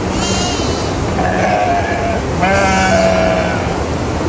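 Sheep in a large flock bleating: three calls, the last one, starting a little past halfway, the longest and loudest. A steady low background noise runs beneath.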